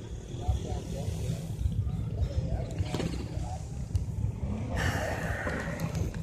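Faint voices of people talking in the background over a steady low rumble, with a single click about three seconds in and a patch of hiss near the end.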